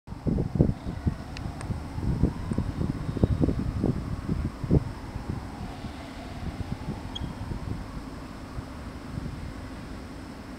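Wind buffeting the camera microphone in irregular gusts, strongest in the first five seconds, then settling to a steady low rumble. A faint tone dips and rises near the middle.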